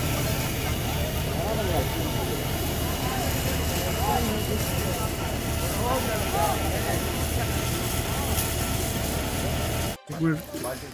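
A fire engine's pump motor runs steadily while a hose jet sprays water with a continuous hiss. Men's voices talk in the background.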